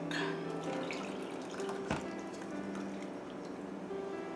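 Coconut milk pouring and dripping from a ceramic bowl into a plastic tub, with a single knock about two seconds in, over steady background music.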